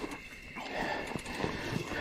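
Faint, irregular scuffs and light knocks of a mountain bike and rider moving on a dirt trail just after a crash.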